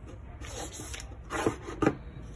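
Handling noise: short rubbing and scraping sounds, with two louder strokes in the second half, over a low steady hum.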